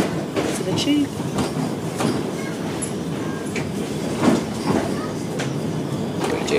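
Interior of a Metrolink light-rail tram running: a steady rumble with scattered knocks and rattles from the rails.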